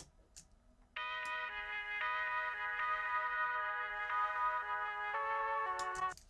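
A music track of sustained electronic keyboard chords, played back through a reverb insert effect, starts about a second in. The chords change every second or so at a steady, constant volume.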